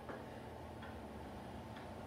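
A few faint, unevenly spaced clicks and taps from a tape measure and bolt being handled on a small work table, over a steady low hum.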